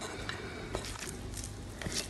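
Quiet, soft scraping and squishing as a moist tuna filling is pushed out of a glass bowl with a silicone spatula and drops onto raw batter, with a couple of faint ticks.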